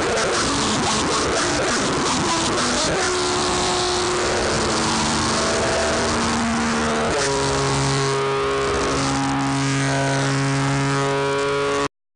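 Electric guitar noise freakout. Harsh, dense noise gives way after about three seconds to held, sustained tones. From about seven seconds in, several of these tones stack up in a droning chord, and the sound then cuts off suddenly just before the end.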